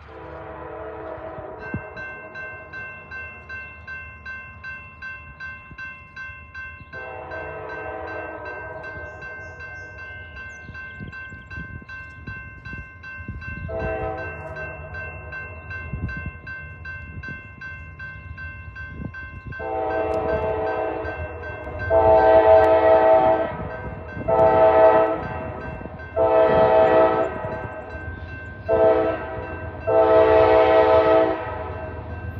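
Air horn of a GE C40-8W diesel locomotive sounding its grade-crossing signal as the train approaches. The horn starts faint, gives long blasts that grow louder, then several short, much louder blasts in the last ten seconds. A grade-crossing bell rings steadily from about two seconds in, over a low engine rumble.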